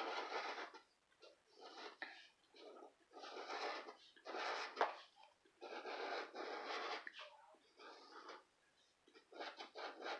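Scratch-off lottery ticket being scratched by hand. The scratcher is dragged over the coated play area in repeated scraping strokes, each from about half a second to a second and a half long, with short pauses between them.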